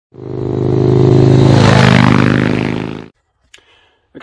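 An engine running steadily with a rush of noise that swells in the middle, fading in and then dying away about three seconds in.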